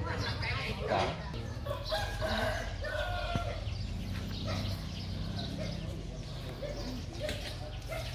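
Animal calls, with pitched calls in the first few seconds and quieter ones after, over faint voices.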